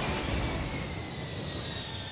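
Whoosh sound effect: a rushing noise with a high whine that falls slowly in pitch and fades away near the end.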